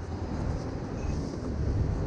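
Low, steady rumble of city street traffic.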